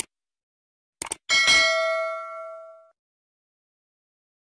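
Subscribe-button animation sound effect: short clicks, then a single bell ding with several ringing partials that fades out over about a second and a half.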